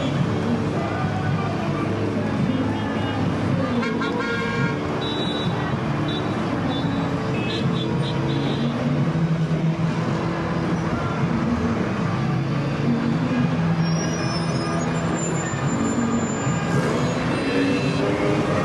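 Traffic-jam soundscape: engines running in stopped traffic, with car horns honking now and then, for example about four and eight seconds in.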